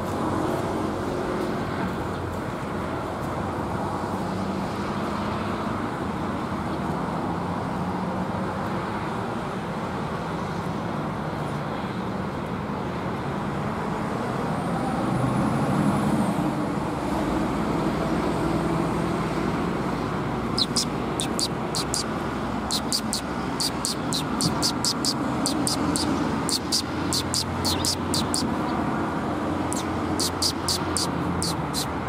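Steady road-traffic noise, with quick runs of high, sharp chirps from Eurasian tree sparrows starting about two-thirds of the way through and carrying on to the end.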